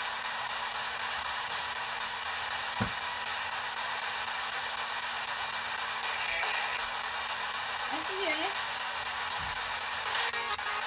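P-SB7 spirit box sweeping through radio stations in reverse at a 250 ms rate, giving a steady hiss of static. A single low thump comes about three seconds in, and short wavering radio fragments break through near the end.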